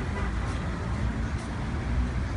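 Steady low rumble of city street traffic, the general outdoor noise around a large crowd standing in the street, with no clear voices.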